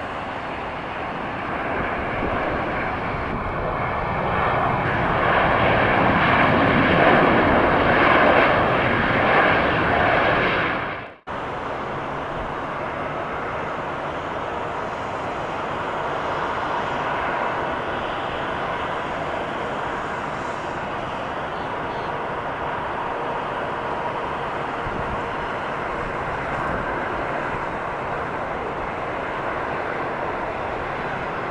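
Jet engine noise of an American Airlines Boeing 737 on its landing rollout, building to a loud peak about eight seconds in as reverse thrust is applied, then cut off abruptly about eleven seconds in. After that, the steadier engine noise of a Delta Boeing 757-232 on final approach, running on until it nears touchdown at the end.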